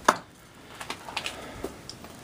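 Handling noise as the camera is carried and swung: a sharp knock right at the start, then a few light clicks and taps.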